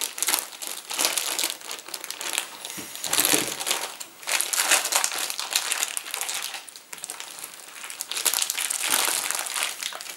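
Thick clear plastic wrapping crinkling and rustling in irregular bursts as it is cut open with scissors and pulled back off a large slab of beef.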